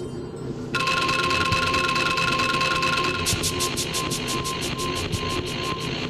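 Electronic music: a sustained chord of steady synthesized tones comes in about a second in, with a fast, even ticking pulse above it.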